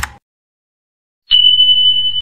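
Sound effects of a subscribe-button animation: a short mouse click, then about a second later a single steady high-pitched beep that holds without fading.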